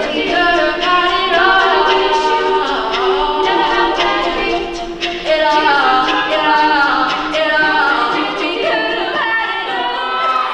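Women's a cappella group singing a song in several-part harmony, voices only with no instruments, unbroken throughout.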